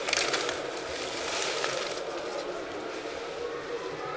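Paper entry slips rustling in a clear plastic draw box as a hand stirs through them and pulls one out. The rustling is busiest in the first couple of seconds, then dies down to a quieter background.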